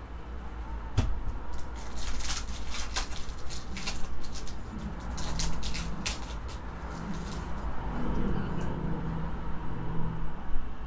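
Trading cards being handled: a sharp click about a second in, then a run of crisp rustling and crinkling as the cards and their foil pack are worked through by hand.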